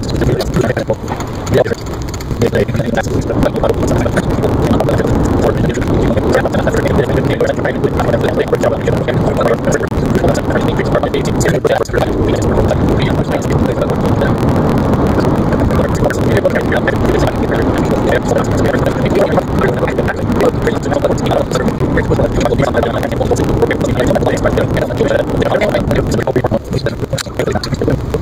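Steady road and engine noise heard inside a moving car, with no breaks.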